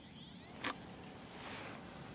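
Faint rustling of camouflage clothing and handling of the camera held against it, with one sharp click about two-thirds of a second in.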